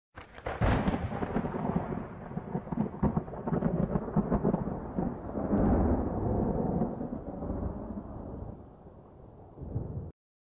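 Thunder-like intro sound effect: a sharp crack about half a second in, then a crackling, rolling rumble that swells again near the middle and fades away toward the end.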